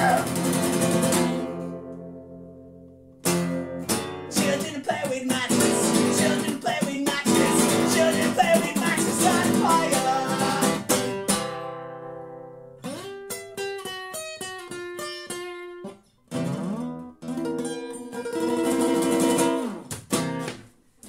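Acoustic guitar playing the outro of a three-chord punk-folk song. A chord is left to ring and fade early on, then strumming picks up again. A run of single picked notes comes in the middle, with a couple of brief stops, before the strumming returns near the end.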